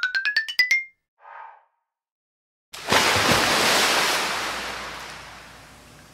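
A rising run of quick, bell-like mallet notes ends about a second in. After a short silence, a loud rush of noise from a passing jet ski and its spray starts suddenly and fades slowly away.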